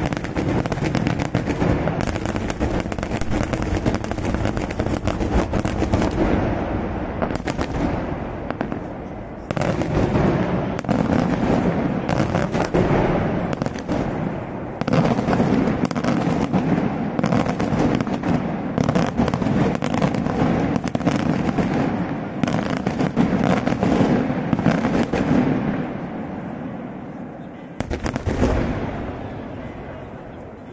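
Daytime fireworks display: a dense, continuous barrage of rapid bangs and cracks from shells and firecracker salvos. The barrage dips briefly about a third and about half way through, and a last loud bang near the end fades away.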